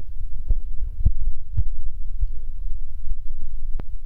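A loud, steady low rumble with several short, sharp clicks, the sharpest near the end.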